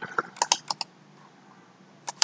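Computer clicking: about six quick, light clicks in the first second.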